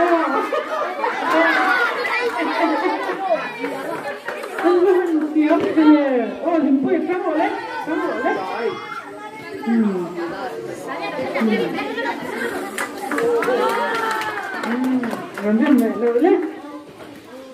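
A group of children's voices chattering and calling out over one another, high-pitched and overlapping throughout.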